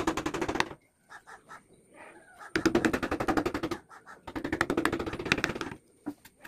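Carving chisel driven into teak with rapid, evenly spaced light taps, coming in three quick bursts.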